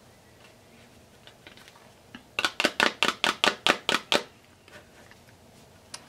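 Glittered cardstock panel tapped repeatedly against the work surface to knock off excess loose glitter. A quick, even run of about a dozen taps, roughly six a second, starts a couple of seconds in and stops after about two seconds.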